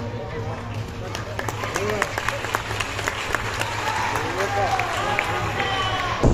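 Crowd of spectators chattering, with scattered sharp hand claps over a steady low hum.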